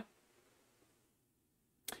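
Near silence: room tone, with one brief click near the end.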